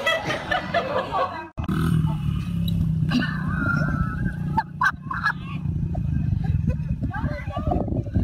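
Short snatches of voices over a steady low rumble. The sound cuts out abruptly about one and a half seconds in, and a different low steady rumble takes over.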